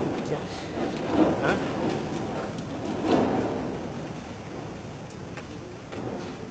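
Snow avalanche sliding down a rocky slope onto a road: a noisy rushing hiss that swells about one and three seconds in, then slowly fades.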